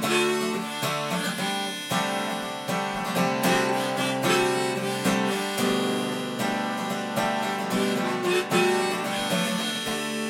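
Harmonica playing held melody notes over a strummed acoustic guitar, both played by one player, as an instrumental break in a folk song.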